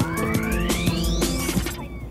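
Music with dense drum hits and a sweep that climbs steadily in pitch; the beat and the sweep cut off shortly before the end.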